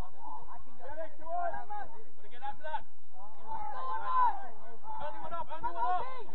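Indistinct, overlapping voices of players and spectators calling out on a football pitch, with no clear words.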